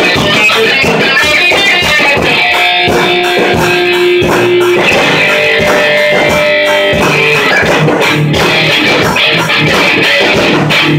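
Electric guitar and drum kit playing a loud rock jam together, with the drums keeping a steady beat. A few guitar notes are held for a second or two in the middle.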